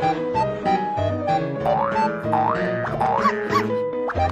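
Playful comedy background music with short repeated plucked-style notes over a pulsing bass, and several quick rising pitch glides in the middle like boing sound effects.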